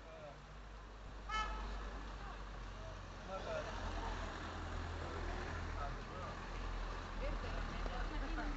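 A brief car horn toot about a second and a half in, over street noise with a steady low rumble. People's voices chatter from about three seconds on.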